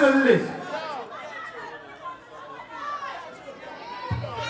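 A man's voice on the microphone, loud for the first half second, then fainter talk and chatter, with no music playing.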